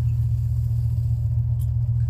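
A car idling, heard from inside the cabin with the heating switched on: a steady low rumble.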